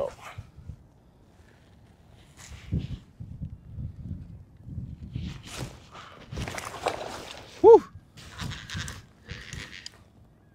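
Scattered rustling and water noise while a hooked lake trout is worked up beside a kayak, over a low rumble. About three-quarters of the way in comes one short vocal sound that rises and falls in pitch, the loudest moment.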